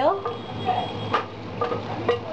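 Metal utensils clicking against a frying pan of potatoes and mushrooms while spices are added, with the clearest click about a second in, over a steady low hum.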